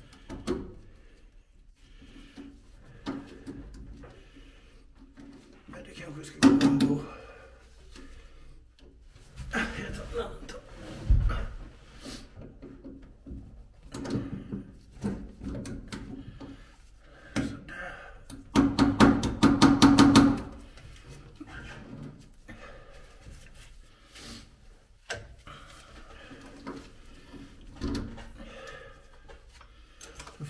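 Pliers working a split pin out of a propeller shaft coupling flange: scattered metal clicks and scrapes of the tool on the pin and nut. The loudest moments come about six seconds in and from about eighteen to twenty seconds.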